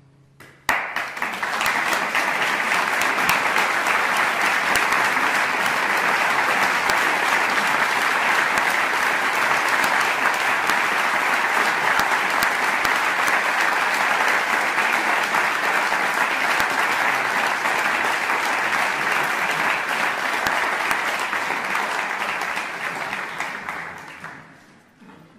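Audience applauding after a concert performance. The applause breaks out suddenly just under a second in, holds steady, and dies away near the end.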